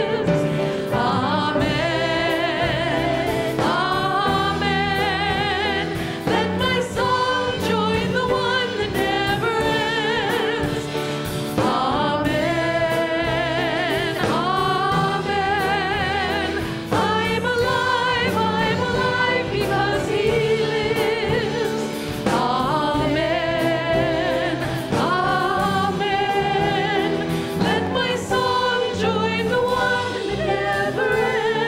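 Live contemporary worship song: three women singing the melody and harmonies with vibrato, in phrases a couple of seconds long, over a band of acoustic guitar, electric bass, drums and keyboard.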